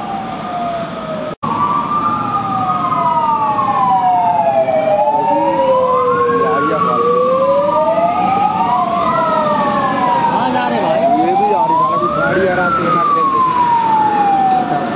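Several vehicle sirens wailing together, each rising and falling slowly and out of step with the others, as from a convoy of emergency vehicles. There is a brief break in the sound about a second and a half in.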